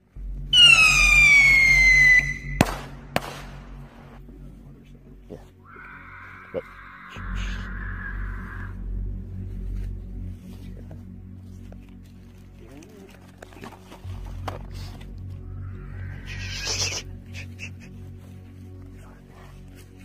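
A whistling firework shrieks with a falling pitch for about two seconds, then two sharp bangs follow. A few seconds later comes a hiss of several seconds, like a burning firework, over a low steady drone.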